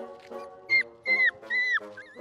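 Young Rhodesian ridgeback puppies whimpering: three short high squeals in quick succession, each dropping in pitch at its end, over background music with sustained notes.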